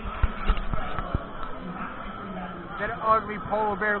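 Busy restaurant background chatter with a low steady hum, with four dull knocks in the first second or so as the camera is handled at the table. A man's voice starts close to the microphone near the end.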